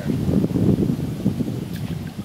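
Uneven low rumbling noise of wind buffeting the microphone.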